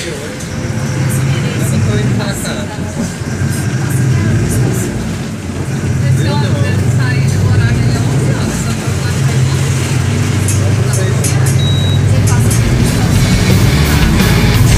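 Engine hum and road noise heard from inside a moving bus, growing louder about halfway through as it picks up speed, with voices talking over it.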